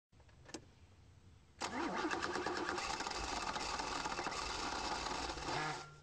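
BMW 1M's twin-turbocharged straight-six starting: a click, then about a second and a half in the engine catches with a quick rise in revs and runs on steadily until it cuts off suddenly near the end.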